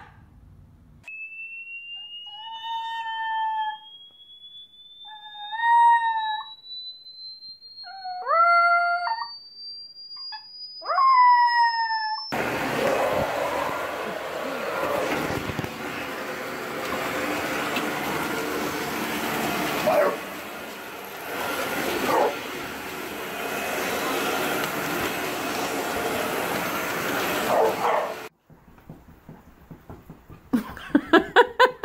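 A dog howls four times, each howl about a second long and bending upward, over a thin steady tone that slowly rises in pitch. It then cuts to a Dyson upright vacuum cleaner running with a steady rushing noise for about sixteen seconds.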